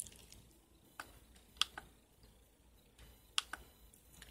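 Short sharp clicks from a laptop's controls as a web page is scrolled down: one at the start, one about a second in, a quick pair in the middle and another quick pair near the end.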